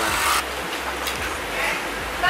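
Steady hiss of background noise in a busy small eatery, with faint background chatter. A brief rushing noise comes right at the start.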